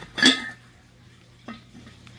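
Hall China ceramic pretzel jar being handled: a sharp clink with a brief ring near the start, then a light knock about a second and a half in.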